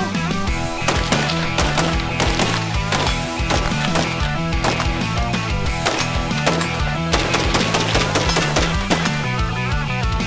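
Rifle gunfire, many shots in quick succession, over a music track with a steady, stepping bass line.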